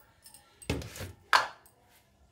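Two knocks of a kitchen utensil against a kadhai, about two-thirds of a second apart, the second sharper and louder, while desi ghee is being put in for a tadka.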